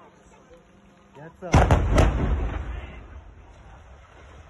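Demolition explosive charges going off about a second and a half in: a sharp blast and two more cracks close behind it, then a rumble that fades over about a second as the brick tower of a concrete mixing plant starts to topple.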